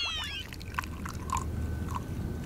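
Faint draught beer tap sounds: a steady low hum with a few soft clicks and drips as the glass is filled. The tail of a falling electronic swoosh fades out in the first half second.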